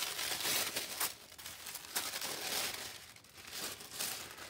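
Thin tissue-paper wrapping crinkling and rustling as it is pulled open and crumpled by hand, in irregular bursts of crackle that ease off briefly near the end.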